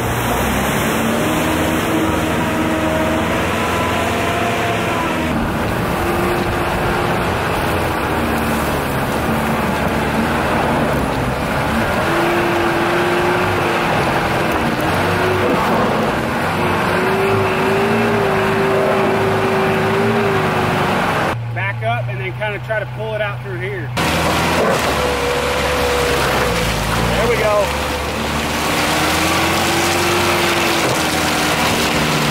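Toyota 4WD pickup driving along a muddy dirt track, heard from the back of the truck: a steady engine note that rises and falls slowly under a constant rush of road and wind noise.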